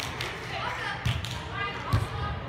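Volleyball being struck by players' hands and forearms during a rally: several short, sharp hits, the loudest near the end, with players' voices between them.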